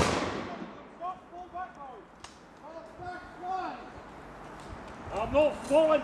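The echo of a musket shot dies away among the trees at the start, followed by distant men's shouts and one sharp crack about two seconds in. Nearer men's voices shout near the end.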